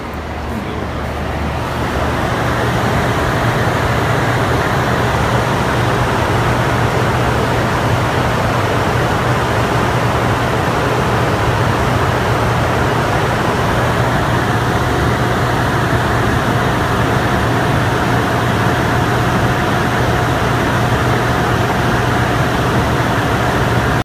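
Hydroelectric generating unit (water turbine and generator) running: a loud, steady machine noise with a low hum, growing louder over the first two seconds and then holding. A thin, steady higher whine joins about fourteen seconds in.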